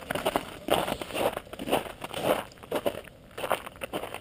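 Footsteps crunching in crusted snow at a walking pace, about two steps a second.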